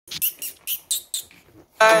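A quick run of short, high squeaks from a pink rubber bone toy as a puppy chews on it. Country music with guitar comes in near the end.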